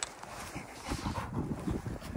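Yellow Labrador retriever nosing and pawing in fresh snow: a run of irregular crunching and scuffing sounds, with a sharp click right at the start.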